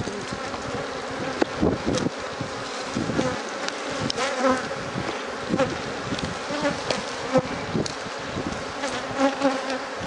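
Honeybees buzzing steadily over an opened hive full of frames, with a few sharp knocks of the hive being worked.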